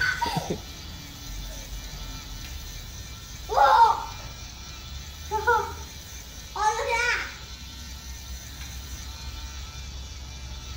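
A child's voice: three short, high, pitched calls about three and a half, five and a half and seven seconds in, with quieter gaps between them.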